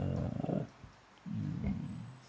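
A man's low voice held on two drawn-out sounds, like a hum or a prolonged syllable: the first lasts about half a second, the second begins just after a second in.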